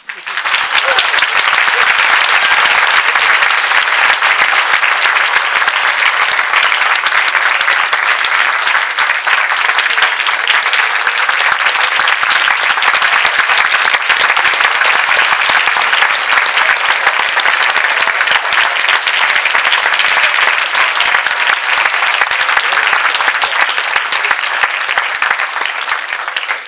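Concert audience applauding, breaking out suddenly and going on as dense, steady clapping, easing slightly near the end.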